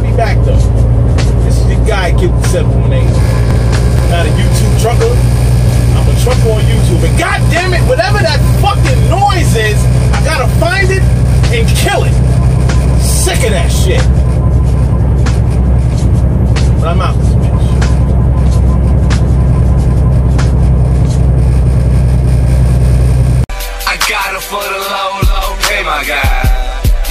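Steady low drone of a semi truck's engine and tyres heard from inside the cab at highway speed, with music with vocals playing over it. About 23 seconds in the drone cuts off and hip hop music with rapping takes over.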